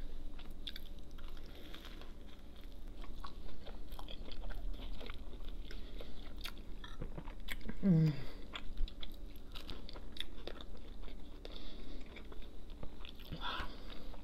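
Close-miked chewing of a toasted grilled Reuben sandwich, with repeated small crunches and wet mouth clicks throughout.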